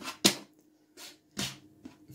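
Plastic draughts pieces being picked up and set down on a wooden board: a few short, separate clicks and slides, spaced about half a second apart.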